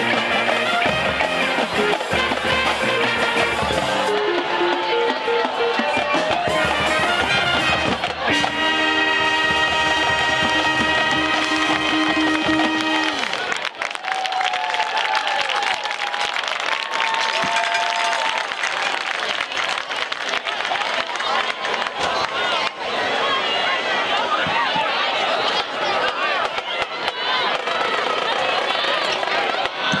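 High school marching band of brass, woodwinds and percussion closing its show on a long held final chord, which cuts off about thirteen seconds in. The crowd then cheers and applauds.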